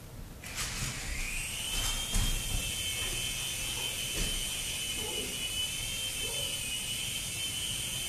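Small electric motor and propeller of an indoor remote-control toy airplane spinning up: a high whine that comes in about half a second in, rises in pitch for about a second, then holds steady.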